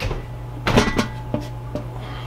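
Clunks and clatter of an aluminum roasting pan with its lid on, lifted off a glass cooktop and put into the oven, heard as a knock, a short burst of clatter and two lighter knocks. A steady low hum runs underneath.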